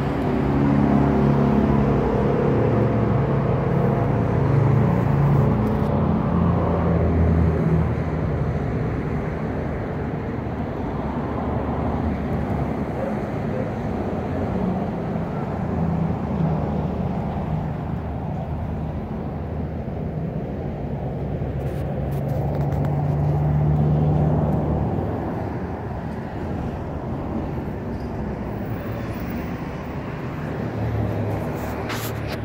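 Road traffic with vehicle engines running close by. It is louder in the first several seconds and swells again about three-quarters of the way through as a vehicle passes.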